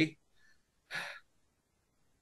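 A person's short intake of breath, about a second in.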